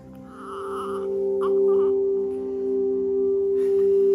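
Background music: a long, steady held note over a soft sustained chord, with a brief higher sound near the start.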